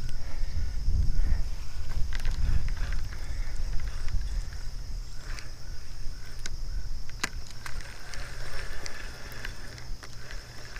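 Wind buffeting a body-worn action-camera microphone with an uneven low rumble, heaviest in the first few seconds. A steady high-pitched whine runs underneath, with scattered small clicks from handling the spinning rod and reel during the retrieve.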